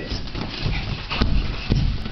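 Dull thumps of a small child landing again and again on the floor of an inflatable bouncer, about twice a second, with a couple of sharper knocks near the end.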